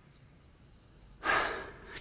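A man's breathy sigh a little over a second in, loud at first and fading over about half a second, after a second of near silence.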